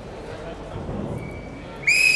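Hall murmur with distant voices, then near the end a sharp, steady, high-pitched whistle blast starts suddenly and is the loudest sound, consistent with the referee's whistle that signals kickoff to the NAO robots.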